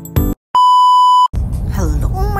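Soft piano music ends on a last note, then after a brief gap a single loud, steady electronic beep sounds for under a second. Then a low steady in-car road rumble starts, with a woman's voice beginning near the end.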